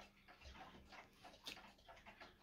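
Near silence with faint ticking of wall clocks.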